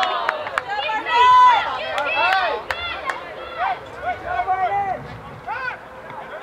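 Several people shouting and calling out over each other, high-pitched and rising and falling, with the loudest a held shout about a second in. A few short sharp knocks come in among the voices.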